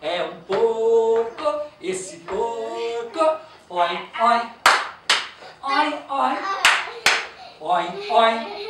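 Voices chanting a children's action song, punctuated by hand claps: two quick claps about halfway through and two more a couple of seconds later.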